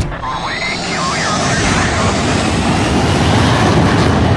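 Jet fighter engine noise: a loud, steady rush with a thin whine rising slowly in pitch through it.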